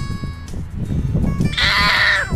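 A toddler's high-pitched squeal, one drawn-out cry near the end, over background music.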